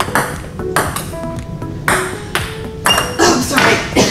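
Table tennis ball being hit back and forth, sharp clicks off the paddles and table roughly a second apart, over background music.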